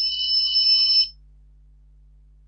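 Electronic notification tone, steady and high-pitched, that lasts about a second and then cuts off. It comes right as the date-and-time sync with the newly paired phone is confirmed.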